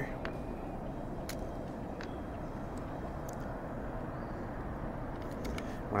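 Steady low rumble of outdoor background noise, with a few faint light clicks; no shot is fired.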